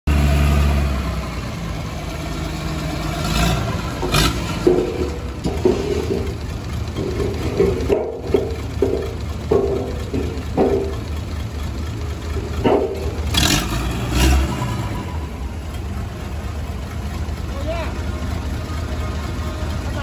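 Diesel engine of a Dynapac CP27 pneumatic-tyred road roller running with a deep, steady rumble, with a few sharp metallic knocks a few seconds in and again past the middle.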